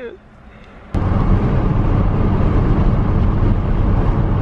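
Steady road and engine noise inside a moving car's cabin at highway speed, cutting in suddenly about a second in after a quiet moment.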